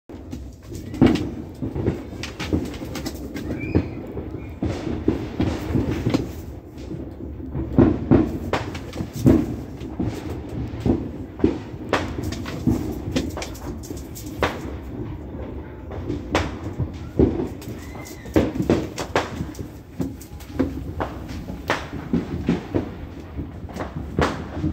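A massive fireworks barrage: a continuous low rumble of explosions, broken by frequent sharp bangs and cracks at irregular intervals.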